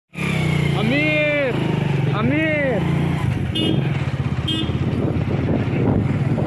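Motorcycle engine running at a steady speed while being ridden. Two drawn-out voice calls, each rising and then falling in pitch, come in the first three seconds.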